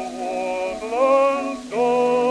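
A 1906 acoustic gramophone recording of a male bass voice singing with heavy vibrato, played through faint record-surface hiss. He holds one note, breaks off briefly near the end, then starts a new held note.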